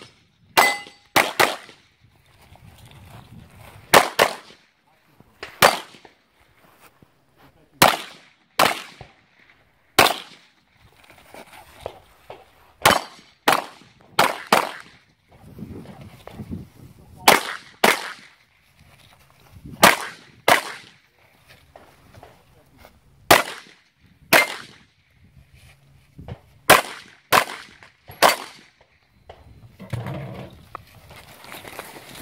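Handgun shots fired in quick pairs and singles, about twenty in all, with pauses of one to three seconds between the strings.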